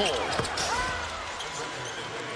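Basketball arena game sound: steady crowd noise and court sounds of play, easing slightly in the second second.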